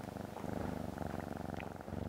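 Domestic cat purring, a steady, rapidly pulsing rumble.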